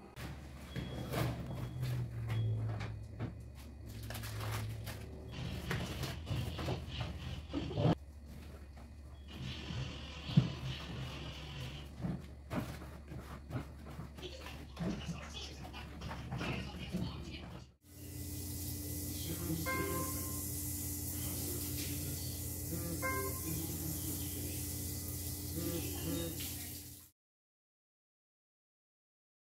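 Sponge scrubbing and wiping kitchen wall tiles, with many short knocks and rubs over a steady low hum. About two-thirds of the way through the sound changes abruptly to a steady hissing passage with held tones, which cuts off just before the end.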